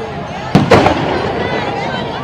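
A firecracker going off: a sharp bang about half a second in, with a second crack right after it, over crowd chatter.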